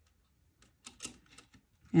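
A few faint, scattered light clicks of metal ball chain and glass seed beads knocking together as they are handled.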